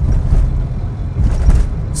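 Low, uneven rumble of road and engine noise inside the cabin of a moving car.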